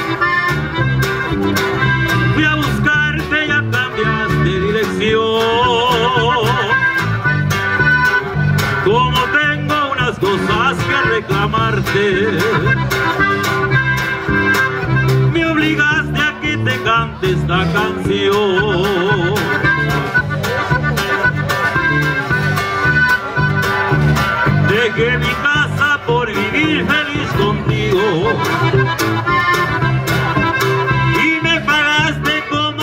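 Live band playing: accordion leading the melody over electric bass, guitar and a drum kit keeping a steady beat.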